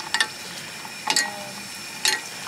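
Flat dried poppadom pellets sizzling in a small saucepan of hot oil, a steady fizz with two sharp pops, one just after the start and one about a second in. The oil is hot enough to start puffing the pellets up into balls.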